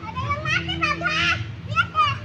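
Young children's high-pitched voices calling and chattering, with a loud call near the end.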